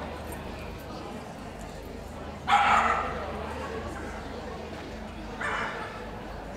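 A dog barking twice: a louder bark about two and a half seconds in and a shorter, fainter one near the end, over steady background noise.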